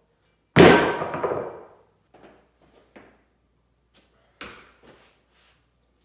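Cast-iron weight plate set down with a loud metallic clang that rings out over about a second, followed by a few much quieter knocks and bumps.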